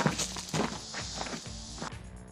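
Footsteps crunching on gravel at a walking pace, about two a second, over background music.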